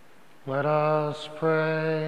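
A priest's voice chanting two long held notes, each on one steady pitch, with a short break between them.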